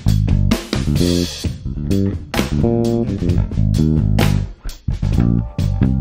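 Harley Benton PJ-5 SBK Deluxe five-string electric bass played through an amp: a riff of plucked notes with sharp attacks, a few held a little longer near the middle.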